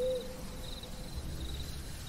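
An owl hooting once right at the start, the note trailing off about a second in, over crickets chirping in short, evenly repeated trills.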